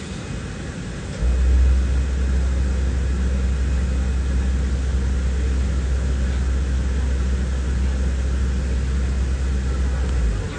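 Airliner cabin noise: a steady hiss of engines and air flow. A deep low rumble comes in about a second in and cuts off near the end.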